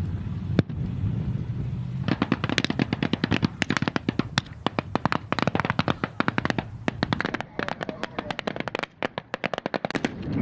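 Rapid, irregular gunfire during a military live-fire exercise: many shots overlapping, as from several automatic weapons firing at once, starting about two seconds in. Before it, a single sharp crack sounds over a low armoured-vehicle engine rumble.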